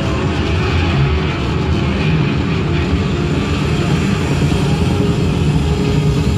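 Post-rock band playing live: a loud, steady, dense drone of bowed double bass and sustained guitars, with no clear drumbeat.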